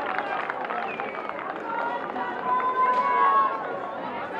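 Several voices shouting and calling out at a rugby match, with one long drawn-out call about two and a half seconds in.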